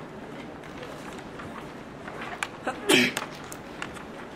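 Steady room noise in a lecture class. A few small clicks come about two seconds in, then one short, loud vocal burst from a person about three seconds in.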